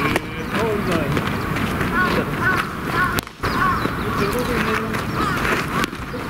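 People's voices talking and calling out, with a brief drop-out in the sound just past halfway.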